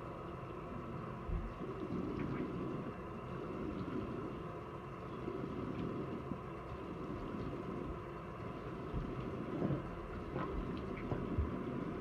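Bathroom sink tap running steadily while hands scoop and splash water onto the face to rinse off face wash, with a few small splashes and knocks.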